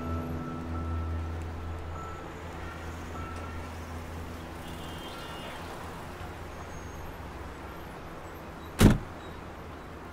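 Steady low hum of a car's interior, with the end of background music fading out over the first couple of seconds. A single sharp knock about nine seconds in.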